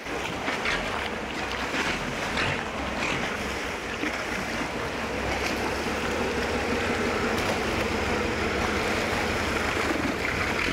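Long-tail boat engine running steadily close by, over water sloshing and wind noise on the microphone.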